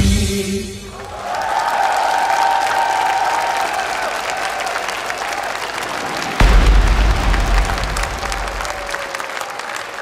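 Dance music stops in the first second, and a large studio audience applauds and cheers. A sudden low rumble comes in about six seconds in and lasts a couple of seconds.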